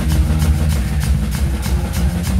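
Live metal band playing loud: a drum kit driven hard with a fast, steady run of kick, snare and cymbal hits over thick sustained low bass notes.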